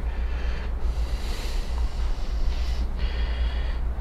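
A person's long, soft breath out over a steady low hum.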